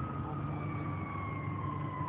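A siren's single long tone slowly winding down in pitch, over a low steady engine rumble.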